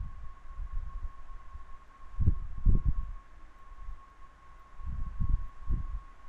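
Soft, low thumps from a pen and hand working on a writing tablet during drawing, in two clusters: one a couple of seconds in, the other near the end. A faint steady high whine lies underneath throughout.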